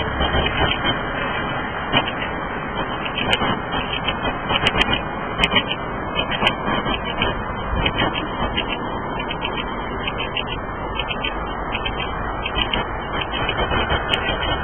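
Steady noise of city street traffic heard from high above, blended into an even wash, with a few brief clicks.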